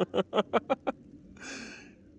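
A person laughing: a quick run of about six short breathy "ha" pulses in the first second, then a longer breathy exhale.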